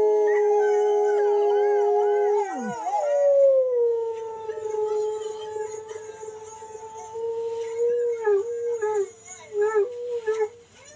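Greyhounds rooing, the breed's drawn-out singing howl. A long howl on a steady pitch with wavering notes over it breaks off about two and a half seconds in. A second long howl follows, sinking slightly, and breaks up into short wavering notes near the end.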